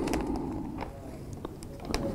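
Excess Spectra Flex polyurethane heat-transfer film being peeled off its tacky carrier sheet with a weeding pick during weeding: faint crackling with a few light ticks.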